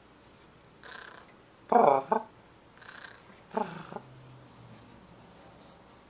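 Orange tabby cat meowing: four short meows about a second apart, the second the loudest, followed by a brief low purr.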